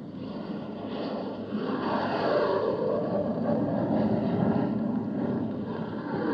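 Radio-drama sound effect of aircraft engines: a dense, steady engine noise that grows louder about a second and a half in.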